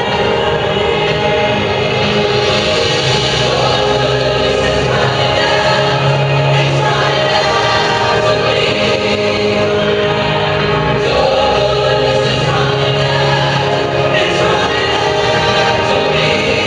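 A choir singing gospel-style music with accompaniment, continuous and full, with long held low notes.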